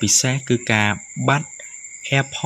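A voice speaking in short phrases, with two steady, high-pitched tones humming underneath throughout.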